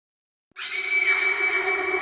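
Silence for about half a second, then a steady, sustained electronic tone with a hissy wash that holds unchanged.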